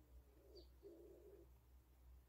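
Near silence: room tone with a faint low two-note bird call, the second note longer, typical of a cooing pigeon, about half a second in.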